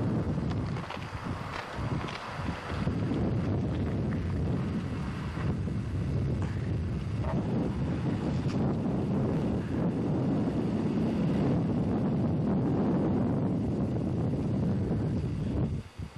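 Wind buffeting a camcorder's microphone: a steady low rumble that swells and dips, dropping away suddenly at the very end.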